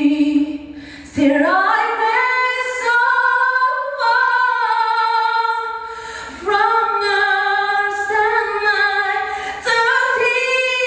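A woman singing solo a cappella, with no accompaniment, in long sustained phrases. The phrases break for short breaths about a second in, at about six and a half seconds, and near the end.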